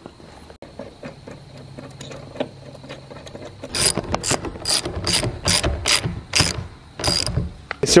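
Hand ratchet wrench clicking in quick back-and-forth strokes, about ten of them, starting about four seconds in, as it tightens the nuts on a steel caster wheel's mounting plate.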